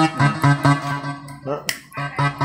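Yamaha PSR-S975 arranger keyboard sounding one note struck again and again, about four times a second, to demonstrate its touch-sensitivity (velocity) setting. A sharp click comes near the end.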